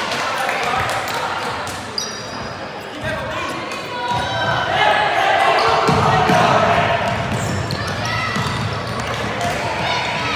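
Basketball bouncing on a hardwood gym floor during play, with players' and spectators' voices echoing around the large gym. A brief high squeak sounds about two seconds in.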